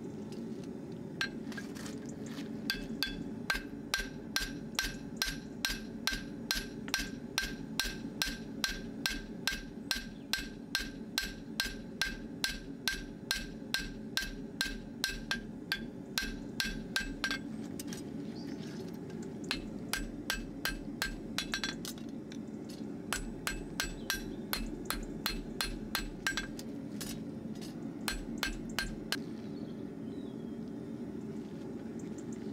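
Farrier's hammer striking a steel horseshoe on the anvil, drawing up the shoe's clips so they stand taller to suit a wedge pad. A fast, even run of ringing metallic blows, about three a second, for some fifteen seconds, then a pause and three shorter runs of blows.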